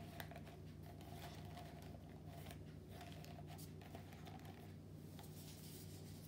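Quiet room tone with a steady low hum, and faint rustles and small clicks of a paper coffee filter being handled and fitted inside a paper cup.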